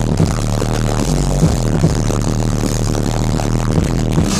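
Loud dubstep played over a festival sound system, with a heavy, steady bass under a dense, gritty synth texture.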